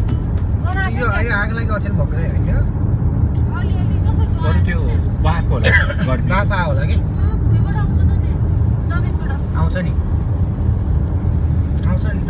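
Steady low rumble of a car driving, heard from inside the cabin, with indistinct voices talking over it at times.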